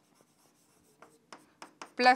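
Stylus writing on a large touchscreen display: a few short, faint strokes of the pen tip on the glass in the second half.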